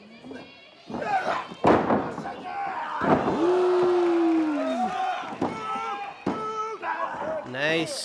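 Sound of a pro wrestling match: a few thuds of bodies hitting the ring mat, the loudest about two seconds in. Voices call out over it, one of them in a single long drawn-out call that falls away at its end.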